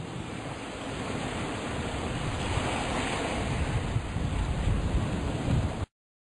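Sea waves washing onto a shore, an even rushing surf that swells slowly and cuts off suddenly near the end.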